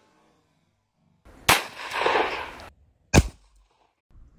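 Two revolver shots of .38 Special fired from a Taurus Tracker .357 Magnum revolver, about one and a half seconds in and again about a second and a half later. The first is followed by about a second of rushing noise; the second rings briefly.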